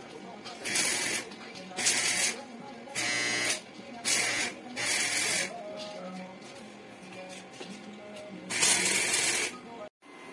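Electric arc welder striking short tack welds on a steel beam frame: six crackling, hissing bursts of about half a second each, spread over the first five seconds, then a longer one of about a second near the end.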